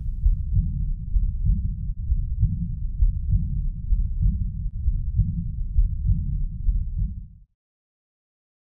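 Heart sounds heard through a stethoscope, given as an example of aortic regurgitation: a regular low beat a little more than once a second, with a murmur filling the gaps between beats. It cuts off suddenly near the end.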